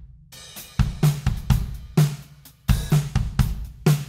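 Playback of a live acoustic drum-kit recording, kick, snare, hi-hat and cymbals in a groove, with its kick drum reinforced by a sampled kick from Cubase's Groove Agent Nashville kit in a blend of direct and room sound.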